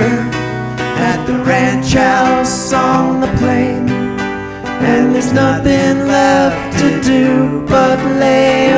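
Acoustic country string band playing an instrumental break: two acoustic guitars strumming chords under a lead melody that bends and wavers in pitch, with a small plucked instrument, likely a mandolin, alongside.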